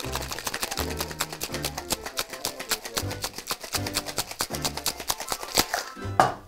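Ice rattling in a metal cocktail shaker shaken hard and fast, a quick run of sharp clacks, under background music with a repeating bass line.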